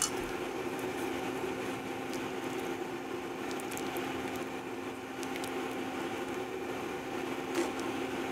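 Hot potato soup bubbling in a copper-coloured square pan as a fork stirs the cornstarch slurry through it, with a few faint ticks of the fork and a steady low hum underneath.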